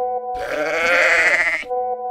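A single drawn-out bleat, about a second and a quarter long, over a held music chord that carries on after it ends.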